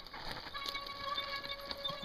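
Mountain bike rolling down a loose stony track towards the microphone, with small clicks from the tyres on the stones. A steady high squeal from its brakes is held for about a second and a half.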